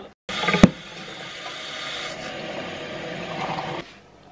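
Cold water being poured into a glass French press of ground coffee: a steady rush that starts suddenly with a sharp click just after and cuts off shortly before the end.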